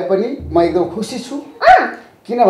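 Voices in conversation with no clear words, ending in one short, loud vocal cry that rises and falls in pitch near the end.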